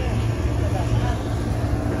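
Large outdoor air-conditioning units on pilgrim tents running: a steady low rumble with a faint hum.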